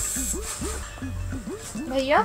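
Short bits of voice over background music with a low pulsing beat.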